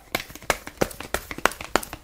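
A tarot deck being shuffled by hand: a quick, irregular run of crisp card clicks and rustles.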